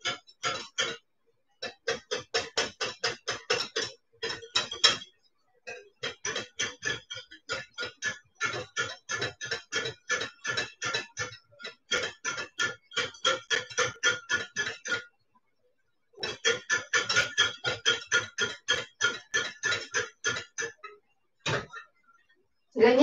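Wire whisk beating against the sides of a glass bowl in quick, even strokes of about five a second, each with a short glassy ring, in runs broken by brief pauses about a second in, near five seconds and around fifteen seconds. It is egg-yolk and butter sauce being whisked over a double boiler, kept moving so it doesn't clump.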